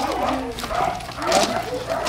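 Several people talking in the background.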